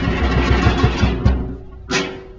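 Fast, driving drumming of a Polynesian fire dance: quick low drum strokes about four to five a second, easing off near the end and closed by one sharp hit.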